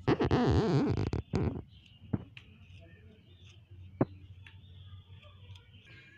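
A utensil scraping and stirring spice powder across a ceramic plate, a rough scraping for about the first second and again briefly just after, then two light taps.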